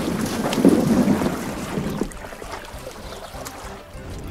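Sound effect of a boat moving through water: a rushing noise that is loudest for the first two seconds, then fades lower.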